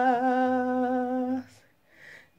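A woman's voice singing one long held note, unaccompanied, steady in pitch. It stops about two-thirds of the way in.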